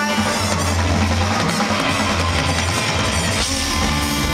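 Rock band playing live and loud, with drums and a heavy bass line.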